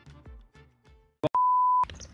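The faint tail of background music with a beat, then, near the end, a single steady high-pitched electronic beep about half a second long. It starts and stops abruptly with clicks, like an edit bleep.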